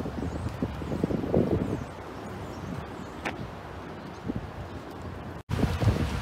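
Wind buffeting the phone's microphone: a low rumble that comes in gusts during the first two seconds, then settles to a steadier, softer rush. The sound cuts out completely for an instant near the end.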